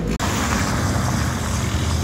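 Steady engine rumble with a hiss, starting abruptly a moment in.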